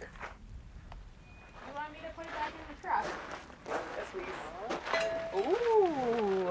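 Quiet, indistinct conversation between people, with a few light knocks.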